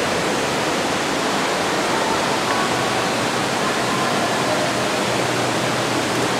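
Steady rush of water pouring over a four-foot man-made dam on an underground river.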